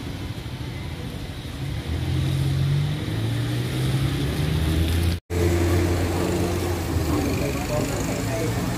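A low-pitched voice chanting in a steady monotone, holding long notes that shift pitch now and then, starting about two seconds in; the sound cuts out completely for an instant a little after five seconds.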